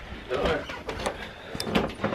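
A short, faint murmur of a person's voice, then a few sharp clicks and knocks near the end from a handheld camera being moved about.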